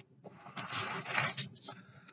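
Bible pages rustling as they are handled, a soft papery rustle lasting about a second.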